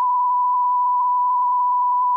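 Radio dispatch alert tone heard over a police/fire scanner: one long, steady, high-pitched beep at a single pitch. It is the page tone that alerts a fire department to a dispatch call.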